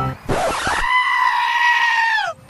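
A long, high-pitched scream: a brief noisy rush, then one cry held steady for over a second that drops in pitch as it breaks off.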